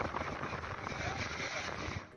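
Seafront ambient noise: a steady wash of wind, water and distant traffic, with faint voices of people standing nearby.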